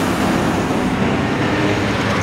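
Steady city traffic noise, loud and even, with a low rumble throughout.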